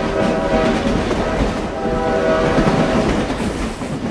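A train passing at speed with its horn blowing, the horn dropping away near the end.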